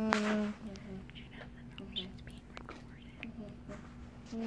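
A young girl's voice: a short sung "uh" at the start, then a quiet steady hum, with a few light clicks from the plastic toy pieces she is handling.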